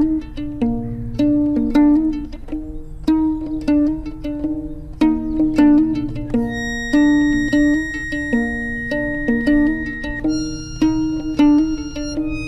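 Fiddle played pizzicato, plucking a repeating figure of notes about two a second, with an accordion coming in on long held high notes about halfway through.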